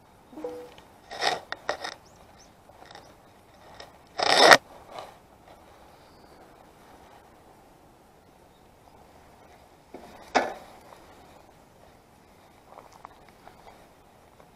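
Handling noise from a camera being moved around on a bicycle's handlebars: scattered scrapes and rubs, the loudest about four and a half seconds in and another sharp one about ten seconds in.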